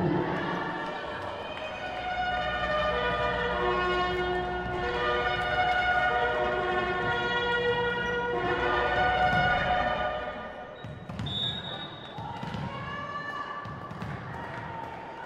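A melody of held notes, sung or played through the hall, fills the first ten seconds. About eleven seconds in comes a short high whistle blast, the referee's signal for the serve, followed by thuds of a volleyball on the wooden court.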